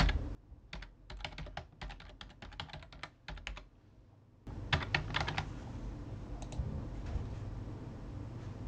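Typing a password on a computer keyboard: a quick run of keystrokes for the first few seconds, a short pause, then a few more key clicks about five seconds in. A steady low hum sets in about halfway through.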